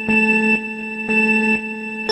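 Electronic countdown beeps over a steady electronic tone: a low pitched beep sounds twice, a second apart, each lasting about half a second.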